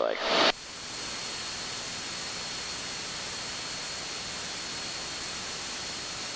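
Steady hiss of static on an aircraft headset intercom audio feed, with a faint thin high tone running through it. A word spoken over the intercom is heard at the very start.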